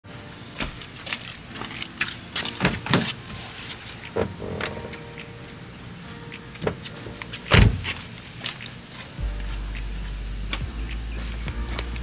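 Keys jangling, with scattered clicks and knocks of handling at a car door and one heavy thump about seven and a half seconds in. About nine seconds in, a low steady hum comes in under the clicks.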